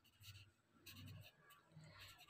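Faint scratching of a felt-tip marker writing on paper, in a few short strokes.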